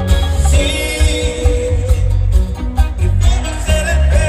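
Live concert music: a band playing a Latin pop ballad with a male lead singer over a deep, steady bass.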